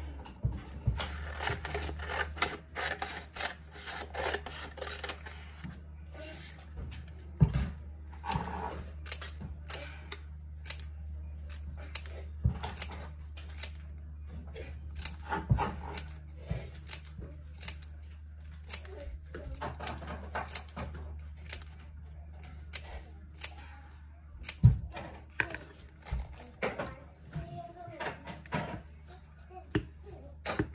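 Scissors snipping a strip of brown card into small squares, a sharp click with each cut, repeated many times over a steady low hum.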